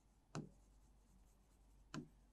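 Faint sound of writing on a board: the writing tip taps sharply against the board about a third of a second in and again near the end while the word 'Creditors' is being written.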